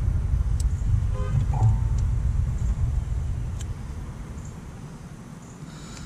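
Low rumble of a passing motor vehicle, fading away over several seconds, with a short tone about a second in.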